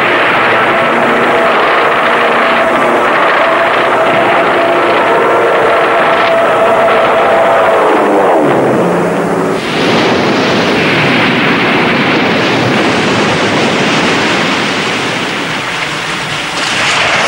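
Aircraft engines running loudly on an old film soundtrack, with a steady drone for the first half. A falling-pitch pass comes about halfway through, as of a plane going by, and a dense rushing roar follows.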